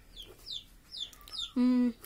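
Birds chirping: short, high, falling chirps about three times a second, with a louder held call of about half a second near the end.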